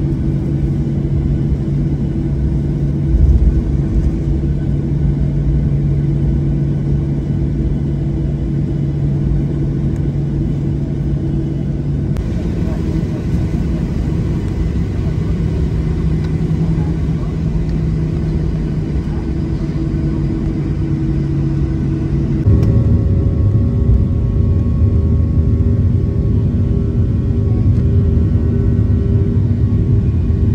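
Boeing 737 jet engines and airflow heard from inside the passenger cabin: a steady low rumble with a hum while taxiing, and a brief low thump about three seconds in. About two-thirds of the way through it grows louder, with new steady tones, as the aircraft climbs after takeoff.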